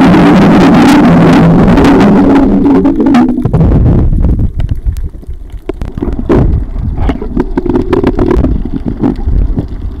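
Underwater sound picked up by a submerged camera while snorkeling: a loud low rumble for about the first three seconds, then quieter water movement with scattered clicks.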